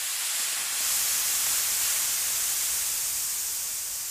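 A steady hissing sound effect, like steam or gas spraying out, a little louder from about a second in and easing off slightly toward the end.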